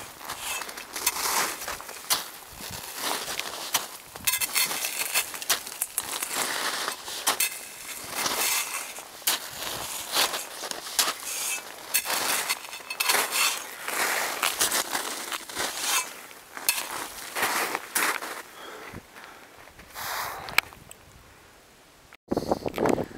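Crampon-shod mountaineering boots crunching into steep packed snow, one step after another in an irregular rhythm as the climber kicks steps up a snow gully. The steps grow quieter near the end.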